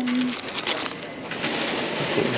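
Plastic packaging and cardboard shoe boxes rustling and crackling as they are handled, a quick run of small crackles and taps. A voice trails off at the very start.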